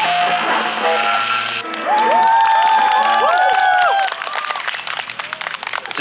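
A live rock band's last notes with electric guitars, cut off about a second and a half in. Then loud, overlapping pitched tones that swoop up and down for about two seconds. Then scattered applause, quieter, in the last two seconds.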